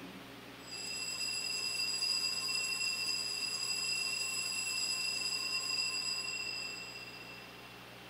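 Altar bells ringing for the elevation of the chalice at the consecration. A bright, high ringing starts about a second in, holds for about six seconds and then fades away.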